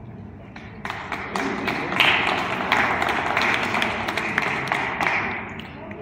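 A small group of people applauding. It starts about a second in, keeps up for about four seconds and fades near the end.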